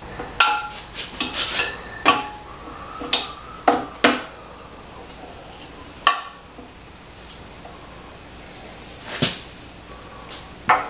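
Sharp clicks and light knocks of hard parts being handled and pressed together, as a chain slider and its small metal inserts are fitted onto a 1983 Honda XL600R's swing arm. There is a quick run of them over the first four seconds, then two single clicks further on.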